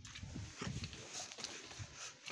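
Footsteps of a person walking away, heard as quiet, irregular knocks and scuffs.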